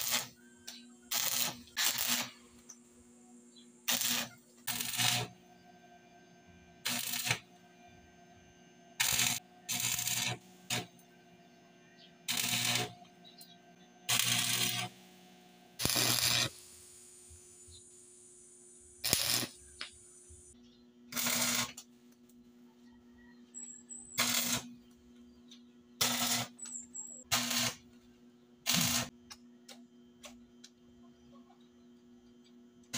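Stick arc welder laying short tack welds on the joints of steel wire mesh: about eighteen brief crackling bursts of arc, each under a second or so, one every one to two seconds, with a low steady hum underneath.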